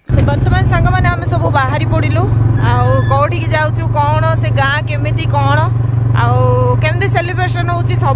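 A motorcycle running steadily at road speed, a loud low drone with wind on the microphone, under a woman talking throughout.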